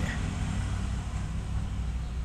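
Steady low hum of an engine running in the background.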